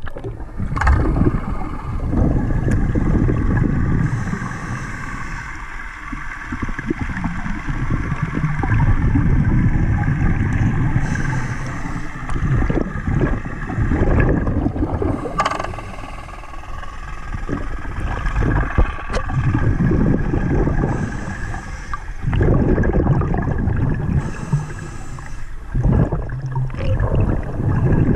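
Underwater sound of a camera moving through lake water: a loud low rush of water that surges and falls every few seconds, with a faint steady whine of several tones above it.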